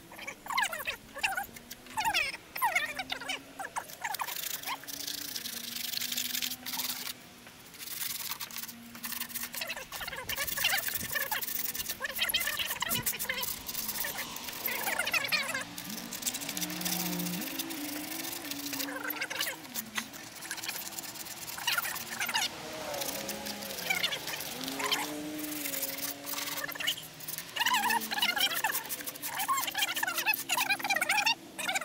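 Hand sanding of lightweight Bondo body filler with sandpaper: irregular bursts of scratchy rubbing strokes, with high chirping squeaks over them.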